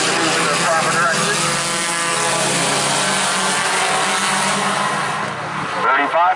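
A pack of small compact race cars racing on an oval, their engines running at speed in one continuous drone.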